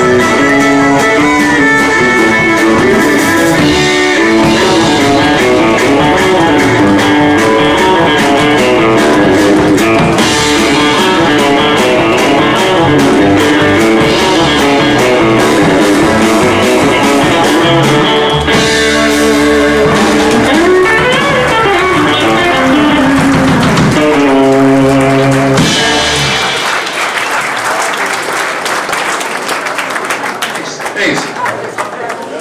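Live country band playing an instrumental, electric guitar and fiddle over bass guitar and drum kit. The tune ends about four seconds before the end, and clapping follows.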